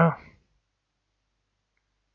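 The tail of a spoken word, then near silence broken by one faint, brief computer-mouse click near the end.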